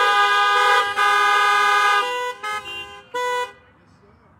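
Several car horns honking together as a cheer of praise, a long overlapping blast of steady tones that breaks off about two seconds in into a few short toots, the last stopping about three and a half seconds in.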